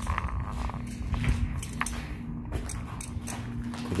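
Footsteps on a concrete walkway and handling noise from a handheld camera, with scattered short clicks over a low rumble and a steady low hum.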